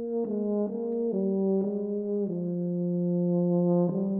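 Tuba playing a slow melodic line fairly high in its range: a few notes stepping downward, then one long held note.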